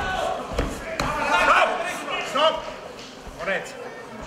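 Men's voices shouting in a large hall, with a few sharp thuds in the first second from the fighters on the cage mat.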